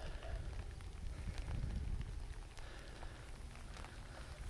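Wind rumbling on the microphone with faint scattered crackles, and footsteps squelching on wet clay mud.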